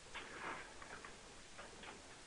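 A quiet pause with faint steady hiss and a few faint, irregular clicks.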